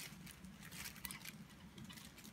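Faint crinkling of a plastic bag being handled, with light scattered crackles.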